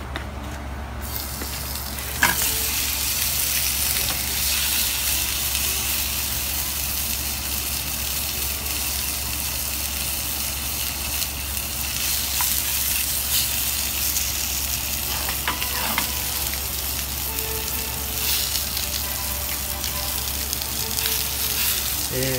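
Pork spare ribs searing in hot oil in a frying pan, browning them. A steady sizzle starts abruptly about two seconds in, with a few light clicks as chopsticks turn the pieces.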